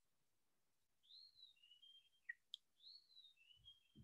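Faint bird song in the background, otherwise near silence: two similar phrases, each a rising-then-falling note followed by a short steady lower note, with a couple of faint clicks between the two phrases.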